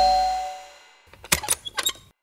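A two-note doorbell chime rings out and fades within the first moments, over fading background music. Then several sharp clicks come in the second half, from the front door's latch as it is opened.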